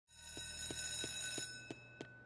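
A cartoon school bell ringing steadily, fading out after about a second and a half. Light footsteps sound at about three steps a second under it.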